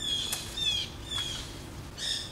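A small bird chirping: three short, high, slightly falling calls about half a second apart, with a single sharp click about a third of a second in.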